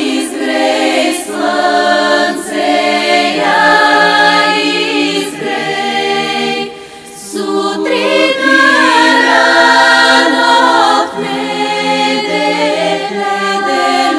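Bulgarian women's choir singing a cappella, several voices holding long chords together, with a short breath between phrases about seven seconds in.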